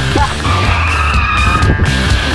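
Car tyres squealing in a skid for about a second, while the background music drops away beneath it.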